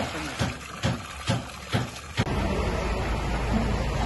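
Water from a hose pouring and splashing into plastic containers, with a regular pulsing about twice a second. About two seconds in it cuts to a steady low rumble of an engine running.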